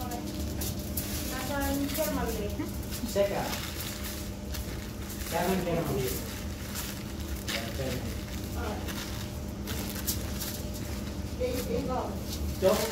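Indistinct background voices over a steady low hum, with soft crinkling of parchment paper being pressed and folded by gloved hands.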